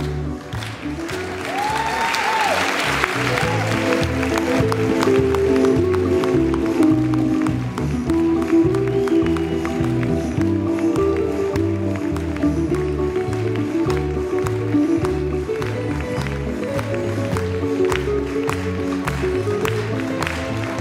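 Ballroom dance music with a steady beat playing through a hall's PA, with a burst of audience applause about two seconds in.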